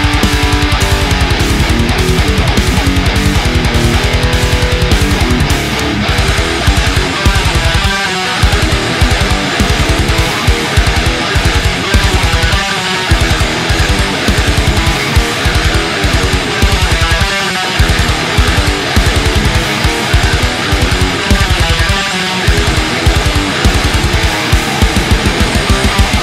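High-gain distorted electric guitar: a Solar guitar with an EMG 81 pickup through an Earthquaker Plumes into a two-channel Mesa/Boogie Dual Rectifier with EL34 tubes, recorded direct through a Two Notes Torpedo Captor load box with speaker-cabinet impulse responses. It plays fast, tightly picked death-metal riffs, turning about six seconds in to choppy palm-muted chugging with short stops.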